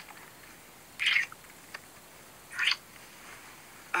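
Two short, smacking kiss sounds from lips on lips, one about a second in and another about two and a half seconds in, over quiet room tone.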